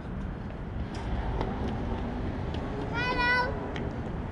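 A young child's short, high-pitched squeal about three seconds in, lasting about half a second, over a steady low rumble of street traffic, with faint voices talking before it.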